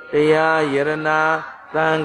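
A man's voice chanting in long, even held tones, in two phrases with a short break about a second and a half in: a Buddhist monk intoning during his sermon.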